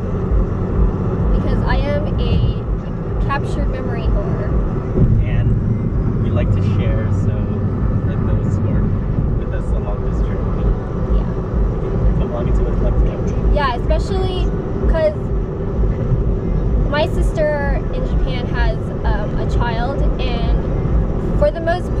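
Steady low rumble of a car driving, engine and tyre noise heard from inside the cabin, with voices talking on and off over it.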